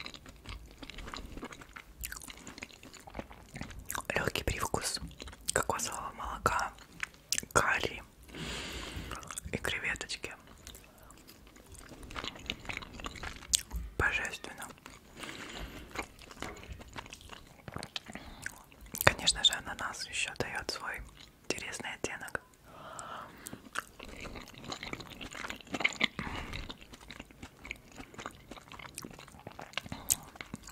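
Close-miked chewing of shrimp fried rice, with wet mouth noises and irregular bites. A metal fork digs into the rice in the pineapple shell.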